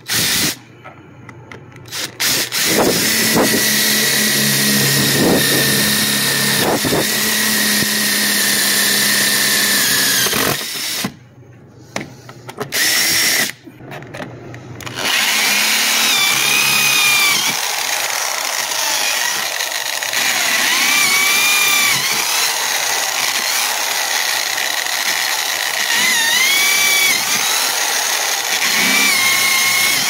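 Power drill boring holes in a metal freezer door frame, running in long stretches with a short stop and a couple of brief bursts around the middle. In the later half the bit squeals against the metal in repeated rising-and-falling whines.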